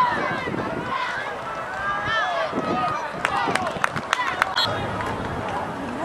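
Spectators and sideline players at a football game shouting and cheering, their voices overlapping with no clear words. About halfway through comes a quick run of six or so sharp cracks.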